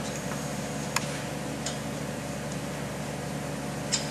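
A few light metallic clicks of a hand tool against a clamp pad of a split-frame pipe beveling machine while it is clamped down onto the pipe, the sharpest about a second in and near the end, over a steady background hum.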